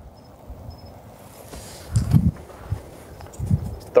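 Rustling and a few dull low thumps from a golfer moving about and setting a ball on an artificial-turf hitting mat, the strongest thump about halfway through and another near the end.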